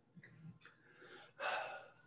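A man takes one audible breath, about half a second long, about one and a half seconds in, after a few faint small rustles.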